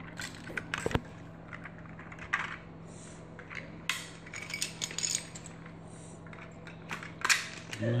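Plastic toy building bricks clicking and clattering as they are handled and pressed together, a scatter of short sharp clicks, the loudest just after seven seconds.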